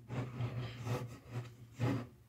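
Faint rubbing and handling sounds of a hand moving over a carved wooden piece, a few short rustles with a slightly louder one near the end, over a low steady hum.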